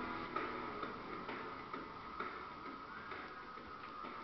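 Faint, irregular light ticks and taps.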